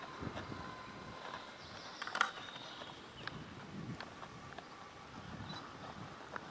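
Quiet outdoor forest ambience with scattered faint clicks and rustles, like handling noise and light steps near the microphone, and a brief faint high tone near the end.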